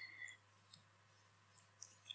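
Near silence: room tone with a steady faint hum and a few small clicks.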